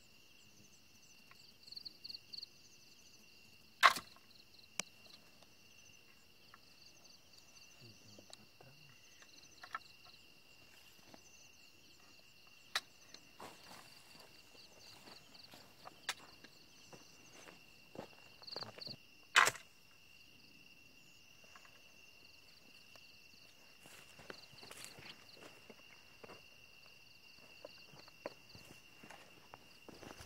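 Two sharp shots from an air rifle, about four seconds in and about nineteen seconds in, over a steady chorus of crickets and other night insects. Fainter clicks and rustling of movement through grass come in between.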